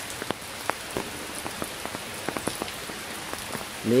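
Light drizzle with water dripping from a leaking gutter corner onto the roof, heard as irregular sharp drips over a steady patter. The leak is at a gutter joint that the speaker assumes needs rewelding.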